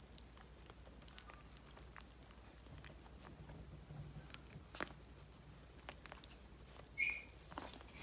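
Yorkshire terrier puppies faintly lapping and chewing soft meat pâté from a plate: scattered small wet clicks and smacks. One short high squeak comes about seven seconds in.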